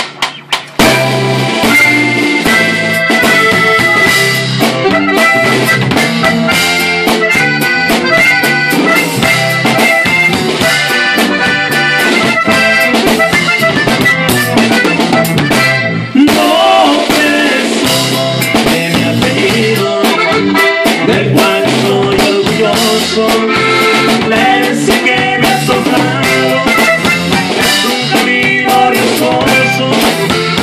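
Norteño corrido played live by a button accordion carrying the melody over a strummed bajo sexto, with no singing.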